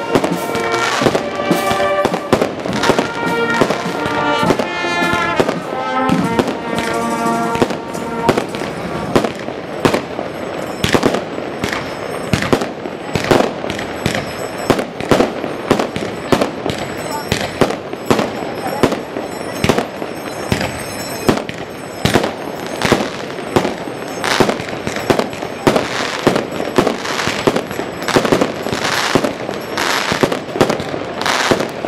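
Firecrackers going off in rapid, irregular cracks, many a second. For the first eight seconds or so a street band with brass and drums plays along with them, then the music stops and the bangs go on alone.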